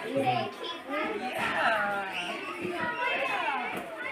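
A group of children's voices chattering and calling out at once, several overlapping.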